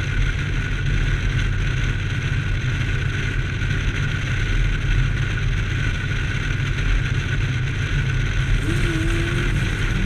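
Steady road and wind noise of a car driving at highway speed, a low rumble with a faint steady hum above it.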